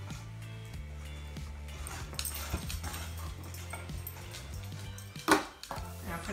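Background music with held low notes, and a single loud dog bark a little after five seconds in.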